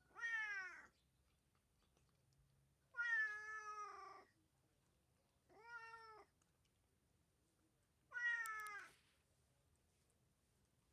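A cat meowing four times, a few seconds apart. The second call is the longest, and the calls drop in pitch at their ends.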